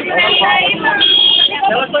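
Two short, steady high-pitched beeps, the second one louder, over people talking close by.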